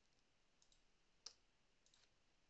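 Near silence with a few faint computer keyboard clicks from typing, one slightly louder about a second in.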